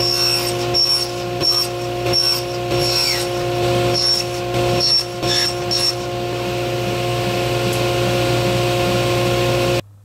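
Table saw running steadily while thin walnut strips are crosscut to length: a quick series of short cutting bursts, about eight in the first six seconds, then the saw spins on without cutting. The sound cuts off suddenly near the end.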